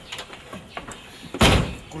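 A car door is slammed shut once, about one and a half seconds in: a single loud slam.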